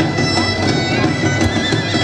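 Folk dance music: a loud reedy wind instrument playing a trilling melody over a steady drone, with a regular beat underneath.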